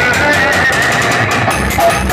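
Loud dance music blasting from a truck-mounted DJ sound-box speaker stack. The heavy bass is missing at first and comes back in about a second and a half in.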